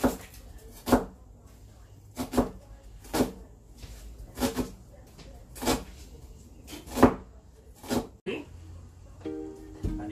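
A large kitchen knife chopping an onion on a plastic cutting board, in slow, separate strikes about once a second. Near the end the chopping stops and plucked ukulele music begins.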